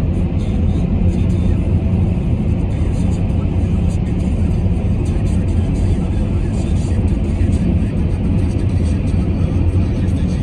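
Steady low rumble of a car driving at highway speed, heard from inside the cabin: tyre and engine noise with no change in pace.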